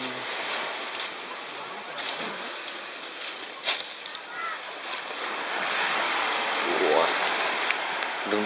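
Small waves washing onto a sandy beach: a steady rushing that grows a little louder in the second half. There is a sharp click about halfway through and brief faint snatches of voices.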